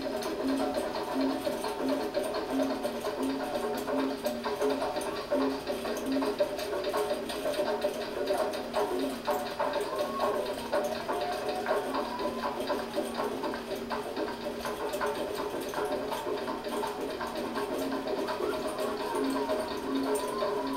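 Latin-style live band music with guitars, sounding thin with almost no deep bass. A low note pulses about twice a second through the first few seconds and again near the end.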